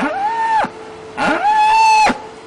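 A black-and-white dairy cow bawling: two long calls, each rising in pitch and then held, the second longer. These are the distress calls of a mother cow grieving for her calf.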